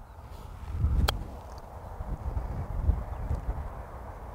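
A golf club clips the ball once in a short chip shot, a single sharp click about a second in. Low wind rumble on the microphone throughout.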